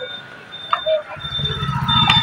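A motorcycle engine running nearby, its low rumble getting louder from about a second in as it approaches, with a faint high-pitched beep repeating on and off behind it.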